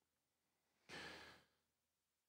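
Near silence, with one short, faint breath from the preacher about a second in.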